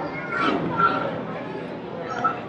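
Indistinct voices echoing in a busy indoor hall, with a short high-pitched voice about half a second in.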